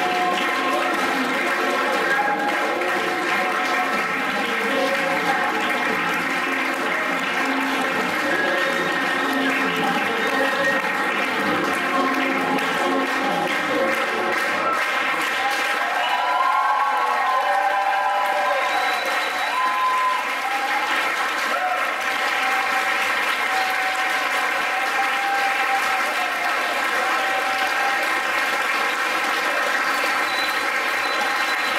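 Audience applause over the end of a Nepali folk song playing through loudspeakers; about halfway through, the music thins out and the applause carries on, with a few voices calling out.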